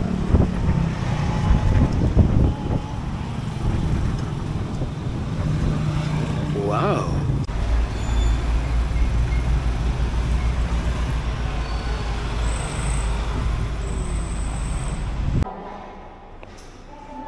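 Street traffic: vehicle engines running and passing, with a rise and fall in pitch around the middle as one goes by, then a steady low rumble that cuts off suddenly near the end.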